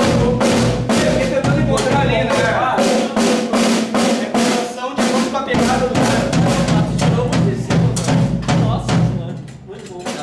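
A toddler banging on an acoustic drum kit's toms and drums in fast, uneven strikes, several a second, with the drums ringing between hits. The hitting eases off near the end.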